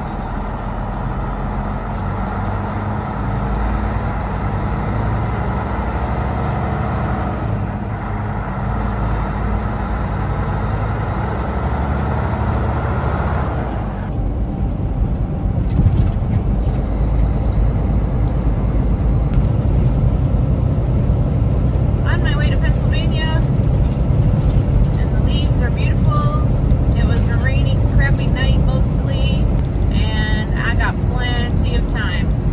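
Steady engine and road rumble heard inside the cab of a moving Kenworth T680 semi truck. About halfway through it becomes deeper and a little louder.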